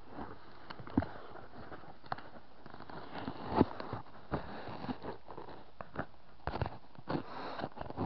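Handling noise on an action camera's built-in microphone, fitted inside a foam cosplay helmet being put on and moved: irregular soft knocks, clicks and rubbing. The knocks are a little louder about a second in and again midway.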